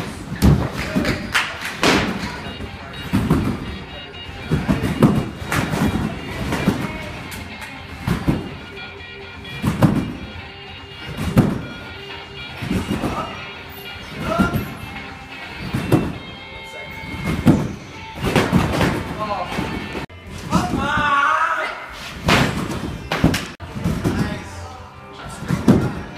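Trampoline bed thumping under a gymnast's repeated bounces, about one landing every second and a half, with music playing throughout.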